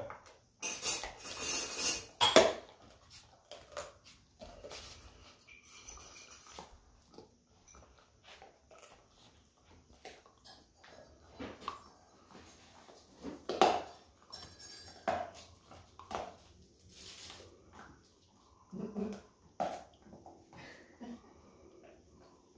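Dogs gnawing on chew sticks: scattered clicks and crunches of teeth on the sticks, with a louder clatter in the first two seconds.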